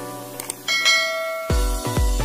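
Two short mouse-click sound effects, then a bright bell-chime notification sound effect that rings for under a second. About one and a half seconds in, music with a heavy, pulsing bass beat starts.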